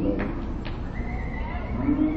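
Country song playing, with a couple of short knocks early on and then a singer holding one long, level note from about one and a half seconds in.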